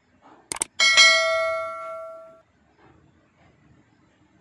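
Subscribe-button overlay sound effect: a sharp double click about half a second in, then a bright notification-bell ding that rings out and fades over about a second and a half.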